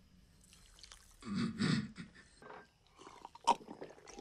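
A man gulping down a drink from a glass: wet swallowing and slurping noises in uneven bursts, with a sharp wet click about three and a half seconds in.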